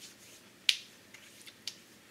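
A sharp click about two-thirds of a second in, followed by a few fainter clicks over the next second.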